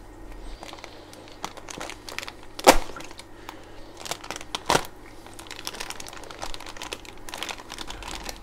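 Plastic fish shipping bag crinkling as it is handled and cut open below its metal clip with a utility knife. Two sharp clicks stand out: the louder one a little under three seconds in, the second about two seconds later.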